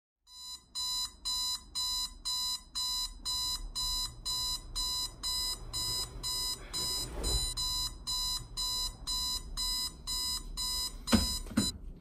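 Electronic alarm beeping in a steady repeating pattern, about three short bright beeps a second, that stops just before the end. A brief rustle of movement about seven seconds in.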